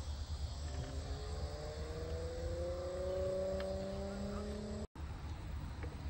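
A distant engine drone, its pitch rising slowly for about four seconds, over a steady low rumble. The sound cuts out for a moment near the end.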